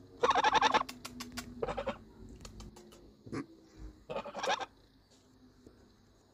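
Domestic goose calling close to the microphone: a loud honk just after the start, a shorter one about a second and a half in, and another about four seconds in, with a few sharp clicks in between.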